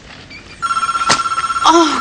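Electronic telephone ringer going off: a steady high tone with a rapid flutter, starting about half a second in.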